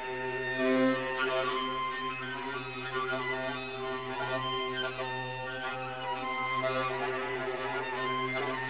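A viola holds its open C string in a long low drone, bringing out the string's overtones. Over it, low voices sing soft rhythmic figures that slide through a chain of vowels (ü, i, u, o, a, e, ä, ö), while soprano and mezzo-soprano hold a quiet open 'o'. Together they form a dense, steady chord of microtonal harmonies with no break.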